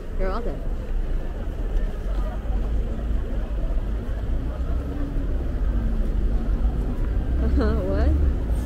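Busy city street ambience: a crowd of pedestrians talking over a steady low rumble of traffic, with a car passing close by. A passer-by's voice rises briefly just after the start and again near the end.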